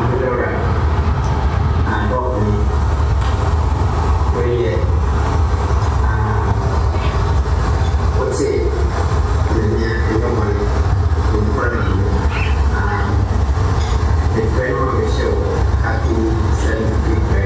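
Indistinct voices over a steady, loud low rumble, as through a hall's PA system.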